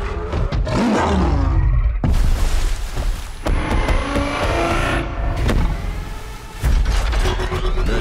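Action-film trailer soundtrack: dramatic music with heavy rumbling bass, layered with sudden impact hits and a vehicle engine sound effect. One of the hits comes about two seconds in, another about five and a half seconds in, and the sound swells again shortly before the end.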